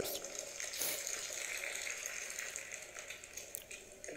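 A steady hiss of background noise, with a faint voice beneath it.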